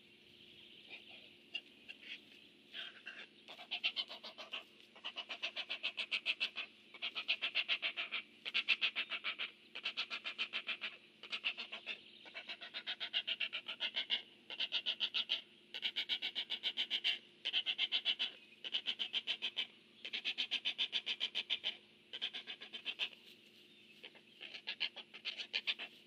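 Great blue heron nestling begging: rapid ticking, clacking chatter in bursts of about a second, repeated over and over with short gaps.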